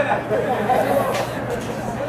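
Spectators' chatter: several indistinct voices talking at once.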